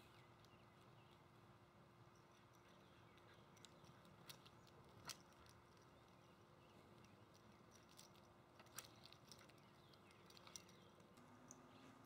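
Near silence: faint outdoor ambience with a few soft clicks.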